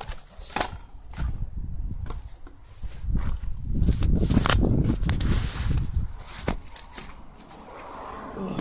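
Handling noise from a handheld phone being moved around: irregular clicks and knocks, with a louder rubbing rumble from about three to six seconds in.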